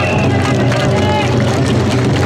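Dense crowd of mikoshi bearers shouting and chanting as they heave the portable shrine, many voices overlapping. A high steady note cuts off just after the start.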